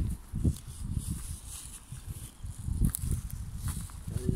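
Footsteps in flip-flops on the dirt and gravel bank of a ditch, with irregular low rumbles on the microphone and a few sharp clicks near the end.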